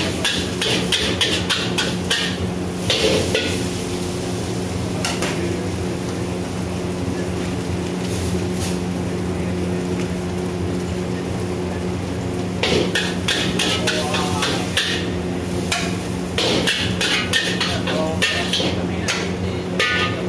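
Metal wok spatula clanking and scraping against a steel wok during stir-frying, in quick runs of strikes during the first few seconds and again through the last third, over a steady low hum.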